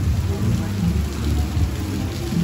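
Rain falling hard in gusty wind, with the wind buffeting the microphone as an uneven low rumble, the loudest part of the sound.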